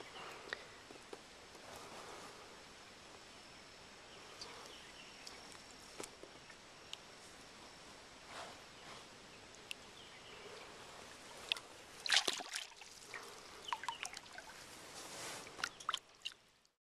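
A largemouth bass let go into the lake: water splashing and sloshing, loudest about twelve seconds in, with scattered drips and small water ticks over quiet outdoor background.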